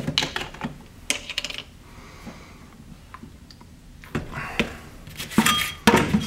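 Short clinks and knocks of steel torque-limiter plates and discs being picked up and handled on a table, with a plastic bottle being set down and rags rustling. The clicks come in a cluster in the first second and a half, then again over the last two seconds.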